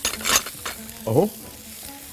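Two quick clinks of small glass bowls being handled on a countertop near the start, and a lighter knock shortly after.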